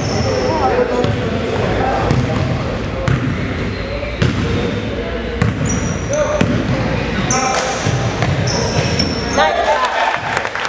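Basketball being dribbled and bouncing on a hardwood gym floor, with sneakers squeaking in short high chirps and players and spectators calling out. A rising shout comes near the end.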